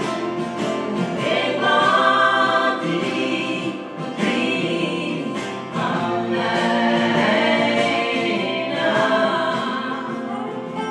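Live acoustic music: a woman singing with long held notes over acoustic guitar and lap steel guitar accompaniment.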